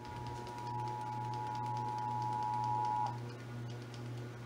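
Emergency Alert System two-tone attention signal, heard through a TV's speaker over a low steady hum. It is a steady dual tone that holds for about three seconds and then cuts off abruptly, announcing a Required Monthly Test alert.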